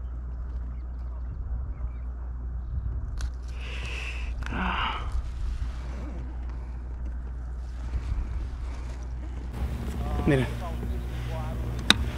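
Steady low wind rumble on the microphone over open water, with a short scuffling noise about four seconds in while a small bass is handled in the kayak. A man says a word near the end.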